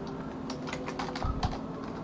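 Computer keyboard being typed on: a quick run of about half a dozen keystrokes, starting about half a second in and ending with a heavier key thud about a second and a half in.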